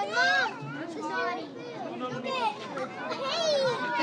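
Several children's voices chattering and calling out over one another, with no single clear speaker.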